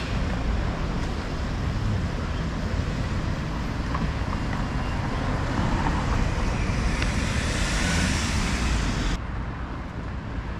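City street traffic: cars driving past on the avenue, with a low rumble of wind on the microphone. The traffic noise swells in the second half as a vehicle passes, then turns abruptly duller near the end.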